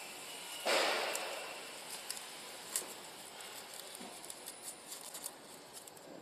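A short hiss starts suddenly just under a second in and fades over about a second, followed by a few scattered light clicks and knocks as hands work on a labeling machine's ribbon code printer.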